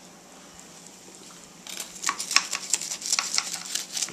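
A metal utensil clicking and scraping against a glass baking dish as a baked bacon bubble is cut and served: a quick, irregular run of sharp taps starting a little before halfway through.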